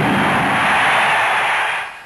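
A loud, steady rushing noise that fades out near the end.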